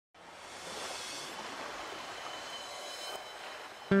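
A steady rushing noise fades in and holds at a moderate level, then plucked-guitar music starts loudly just before the end.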